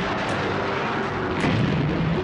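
Loud rushing roar of a rocket launch, swelling heavier and deeper about a second and a half in.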